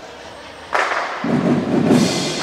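A marching band begins to play in a large gymnasium: after a quiet hall background, a sudden loud entry comes in under a second in, and low brass and percussion sound from about a second and a quarter in.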